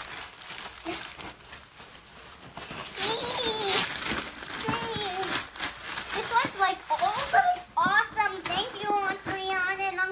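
Wrapping paper being torn and crinkled off a boxed present. A child's excited voice, rising and falling in pitch, joins in the second half.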